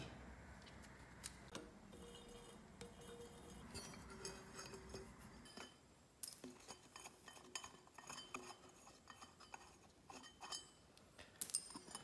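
Near silence with scattered faint clinks and taps: hands handling a mini bike's rear wheel and its steel chain sprocket.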